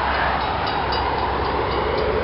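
Train passing close by at speed, a steady rolling rush of wheels on the rails.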